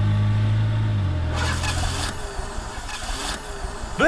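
A Volkswagen sedan driving by: a low, steady engine hum that drops in pitch about a second in, followed by a couple of seconds of rushing tyre and road noise.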